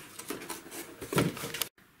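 Hands rummaging in a cardboard box: irregular rustling and light knocking, with one louder knock a little over a second in. The sound then cuts off abruptly for a moment.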